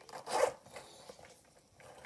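A short rasp about half a second in, from something being handled close to the microphone, followed by faint handling noise.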